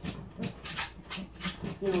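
Fast, even panting, about four or five breaths a second.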